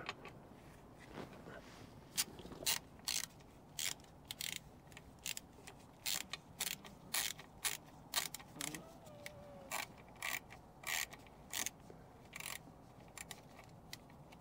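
Hand ratchet wrench clicking in short, irregular strokes as the timing gear cover bolts on a Volvo D13 diesel are run down, snugged only until the flange touches the cover and not yet torqued.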